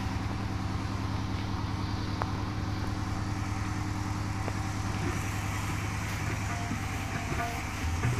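A steady low hum with a fast, regular throb, and a couple of faint clicks in the middle.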